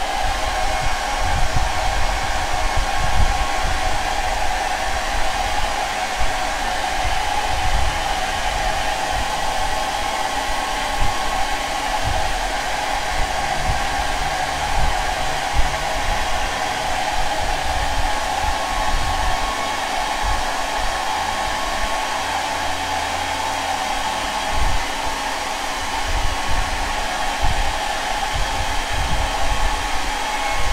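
Hair dryer switched on and running steadily, blowing on freshly painted fabric to dry the acrylic paint, with uneven low rumbling underneath.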